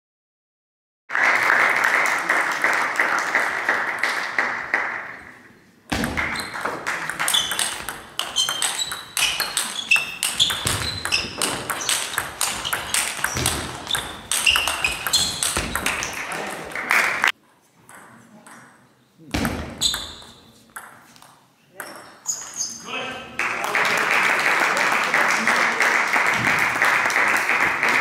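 Table tennis rally in a large hall: the celluloid ball clicking off bats and table in quick succession for about ten seconds, then a few more sharp clicks after a short pause. Audience applause before the rally and again near the end, as the point ends.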